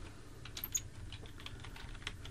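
Faint clicking of computer keyboard keys: a run of quick keystrokes as a short phrase is typed, with a low steady hum under it.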